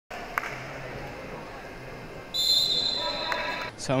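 Wrestling arena background with a knock or two from the bout, then a long shrill whistle blast of over a second, likely the referee's whistle stopping the action.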